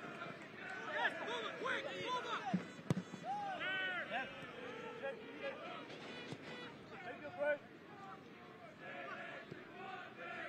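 Faint soccer stadium ambience from pitch-side microphones: scattered distant shouts and calls from players and spectators, with one sharp knock about three seconds in.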